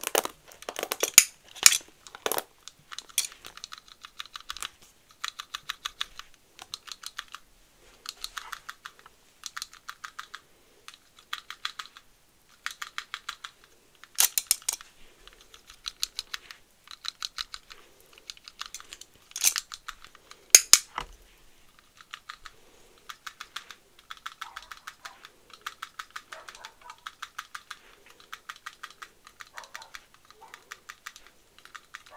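Pink plastic toy hair dryer clicking in short rapid rattling bursts, roughly one a second, standing in for a blow dry. A few louder, sharper clicks come near the start and about two-thirds of the way through.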